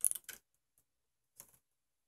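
Small plastic wire-harness connector being pressed into its socket on a TV's button board: a quick run of light plastic clicks at the start and one more click about a second and a half in.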